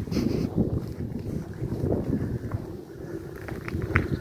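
Wind buffeting a handheld camera's microphone: an uneven, gusting rumble, with a few light clicks near the end.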